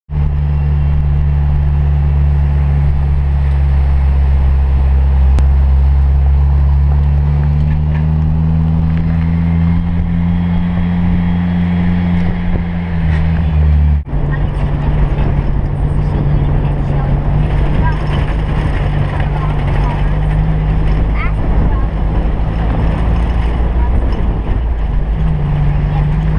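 Engine of an open-sided four-wheel-drive vehicle running steadily on the road, its pitch rising a little. About halfway it cuts abruptly to a rougher, noisier sound of the vehicle jolting along a dirt track, with scattered rattles over the engine.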